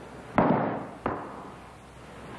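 A heavy ball dropped onto the ground lands with a sharp thud. About two thirds of a second later a slightly quieter echo of the thud comes back off the surrounding stone walls.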